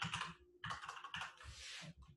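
Fast typing on a computer keyboard in two runs of keystrokes: a short run at the start, then a longer one lasting about a second and a half, as text is entered into a form.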